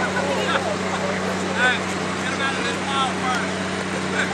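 Indistinct voices of bystanders talking intermittently over steady outdoor noise and a constant low hum.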